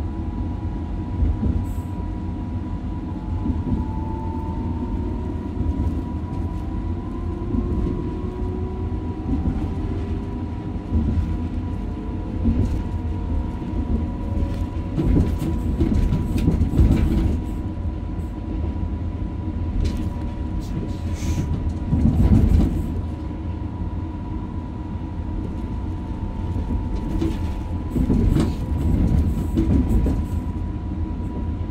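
Passenger train heard from the driver's cab, running with a steady low rumble and a thin steady whine. Clusters of wheel clacks and knocks come around the middle, again a little later and near the end as the wheels run over rail joints and switches into a station yard.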